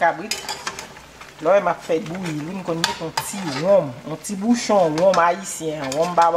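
A metal spoon stirring and scraping chunks of goat meat in a large aluminium pot, with a few sharp scrapes against the pot. From about a second and a half in, a woman's voice is heard over the stirring, louder than it.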